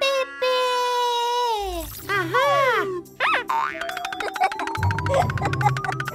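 Cartoon sound effects: a long falling whistle-like glide, then a few springy boings and a quick rising glide, leading into bouncy children's background music with plucked notes and a bass line.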